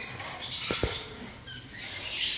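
Caged birds stirring on wire cage floors, a light high rustle, with two sharp clicks about three-quarters of a second in and two short faint chirps a little later.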